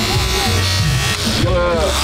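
Battery-powered Holmatro hydraulic rescue cutter switched on: its electric motor and pump start a steady whine about a second in.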